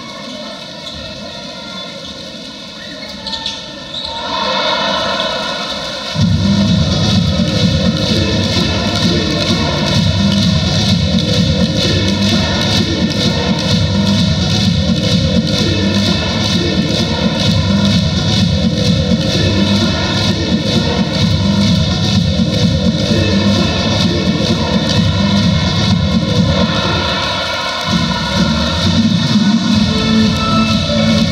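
Basketball arena crowd noise and voices, swelling about four seconds in. About six seconds in, loud cheer music with a heavy beat starts over the arena's sound system, dips briefly near the end, then resumes.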